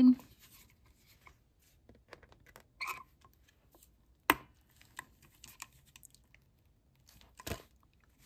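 Hand-held eyelet setting pliers squeezed shut through a heavy paper envelope to set a metal eyelet, with one sharp click about four seconds in. Lighter taps and paper handling come before and after it.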